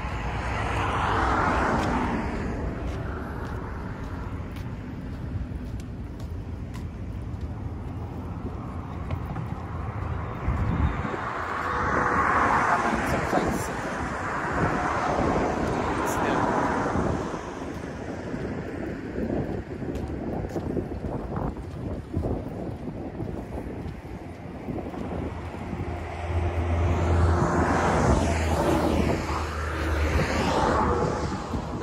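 Traffic passing on a road bridge, three vehicles swelling up and fading away one after another, over a steady rumble of wind on the microphone.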